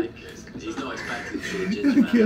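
Speech from a video playing back, with music underneath; quiet at first, then a man's voice picks up about one and a half seconds in.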